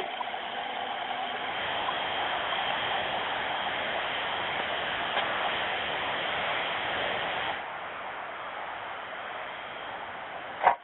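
Steady rushing noise of heavy-haul tractor trucks moving a superheavy load, heard thin and band-limited. It drops a little in level about seven and a half seconds in.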